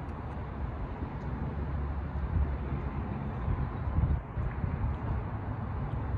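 Outdoor background noise: an uneven low rumble, typical of wind buffeting the microphone, rising and falling throughout.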